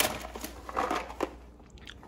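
Clear plastic tub of roasted cashews being taken off a pantry shelf and handled: a run of short plastic clicks and rustles, with the nuts shifting inside, fading toward the end.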